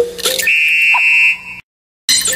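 A short burst of bouncy music gives way to a steady, high, buzzer-like electronic tone lasting about a second, with a brief blip under it near the middle. The tone then cuts off suddenly into silence.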